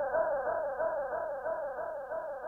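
Electronic synthesizer line from a progressive psytrance track: a filtered, bass-less note that swoops up and back down about four times a second in a steady repeating pattern.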